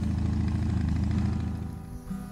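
Motorcycle engine running at a steady idle, cutting off shortly before the end.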